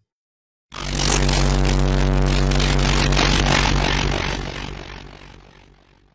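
Outro sound effect for the channel logo: a loud noisy rush with a steady low hum under it. It starts suddenly just under a second in, holds for about three seconds, then fades away.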